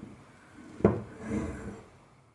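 Sticky sourdough dough being pulled and stretched up out of a glass bowl during a fold, with faint rubbing and one sharp knock a little under a second in.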